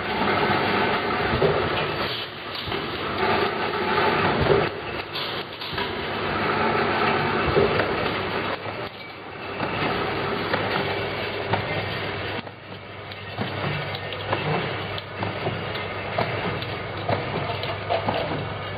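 Bottle filling line running: a plastic slat-chain conveyor carrying 30 ml glass dropper bottles, with a steady mechanical running noise and many small clicks and knocks from the bottles and the machinery.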